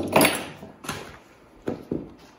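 Lynx hide being cut and pulled away from the head of the carcass, where freezer burn has left it tough: a loud rasping rip at the start that fades over about half a second, then shorter sharp rasps about a second in and twice near the end.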